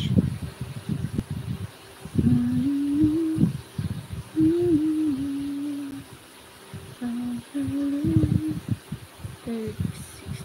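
A person humming a tune in three short phrases, with held notes stepping up and down in pitch, over irregular low thumps.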